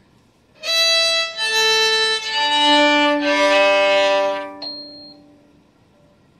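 Open strings of a beginner's Cecilio violin bowed one after another from the highest down, E, A, D, then G, each held about a second and ringing into the next. These are the four open strings played as the opening check for a violin practice app that listens to the player.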